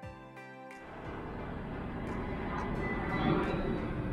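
Soft background music stops within the first second. A steady outdoor rumble of noise then takes over and grows gradually louder.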